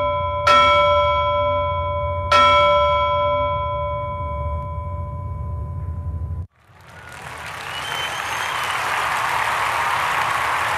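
A bell-like chime is struck twice over the ringing of an earlier strike, with a low hum beneath. The ringing cuts off suddenly about six and a half seconds in, and then applause swells up and holds.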